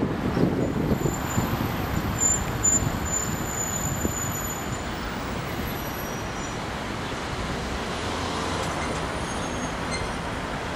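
Road traffic: vehicles driving past on a city road, louder over the first three seconds, then a steadier traffic noise.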